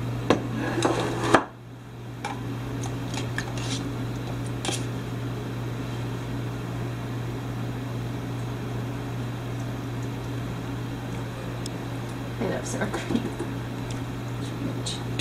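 A metal spoon clinking and scraping against a plastic sour cream tub and a plate, heard as a few separate clicks, over a steady low hum.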